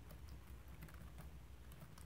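Faint typing on a computer keyboard: a run of light, quick keystrokes as a word is typed.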